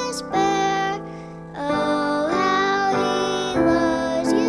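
A young girl singing a simple gospel song solo into a microphone over instrumental backing music, holding long notes with a short break in her singing about a second in.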